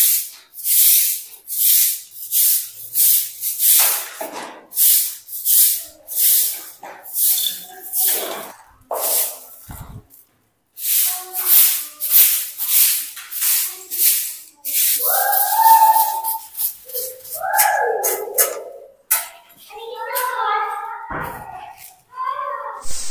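A stiff grass broom (jhadu) sweeping a dusty concrete floor in quick hissing strokes, about two a second, with a brief break about ten seconds in. Over the last several seconds, sustained pitched sounds come in alongside the sweeping.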